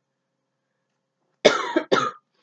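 A young woman coughing twice in quick succession, about a second and a half in. It is the cough of the illness that has her coughing up phlegm and losing her voice.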